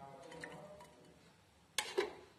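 Quiet kitchen handling noise, with a sharp click near the end.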